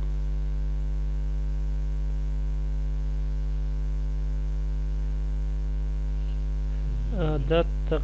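Steady electrical mains hum with a stack of even overtones, a low buzz carried on the recording. A man's voice starts about seven seconds in.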